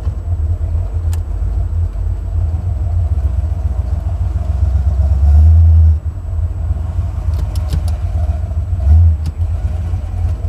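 Buick 455 Stage-1 V8 in a 1987 Buick Regal running as the car drives, a steady deep rumble heard from inside the car. It swells louder twice, briefly: about five seconds in and again near nine seconds.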